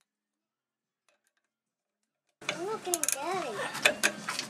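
Silence, then about two and a half seconds in the sound cuts in abruptly: a man's voice and a few sharp clicks from a 14 mm wrench working a rear shock absorber mounting bolt.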